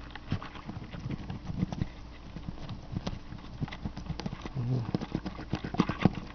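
Irregular light clicks and scratches from fingers handling and scraping the connector pins of a Datsun 280Z EFI coolant temperature sensor held close to the microphone, over a low steady hum.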